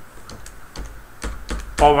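Computer keyboard being typed on: a run of separate, irregularly spaced keystroke clicks as a short word is typed.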